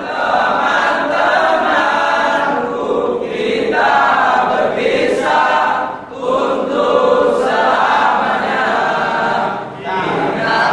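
A large group of young men singing together in a hall, phrase by phrase, with short breaks between phrases about every three seconds.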